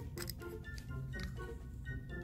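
Soft background music, with a few faint clicks of plastic as a small toy bottle is opened and a squishy toy is pulled out.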